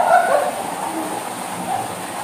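Water pouring from a stone wall waterfall feature into a pool, a steady rush, with the tail end of a voice in the first half second.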